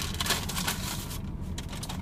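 Paper takeout bag rustling and crinkling as it is handled, dying away a little past halfway, over a steady low rumble.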